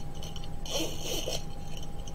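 Brief rustle and light clink of a pen and its packaging being handled, lasting about half a second, about a second in.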